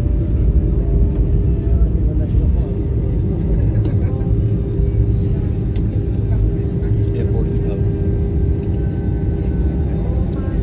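Cabin noise of an Airbus A320-family airliner rolling out on the runway just after touchdown, with the spoilers up: a steady deep rumble with a constant hum that grows a little stronger a few seconds in.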